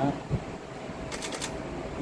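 A pause in speech with a soft low thump, then a quick run of four or five sharp, light clicks about a second in.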